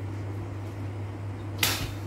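A steady low hum, with one short, sharp hiss, a fraction of a second long, about one and a half seconds in.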